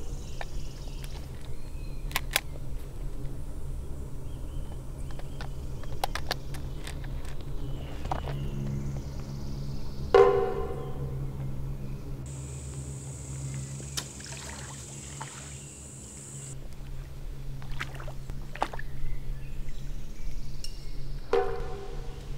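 Tense film-score underscore: a low sustained drone, broken by a few sharp hits and scattered clicks, the strongest hit about ten seconds in. A thin high tone comes in about twelve seconds in and stops about four seconds later.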